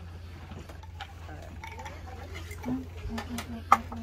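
Plates and cutlery clinking at a dining table, with low voices and a steady low hum underneath. A few short clinks come in the second half, and one sharp one near the end is the loudest sound.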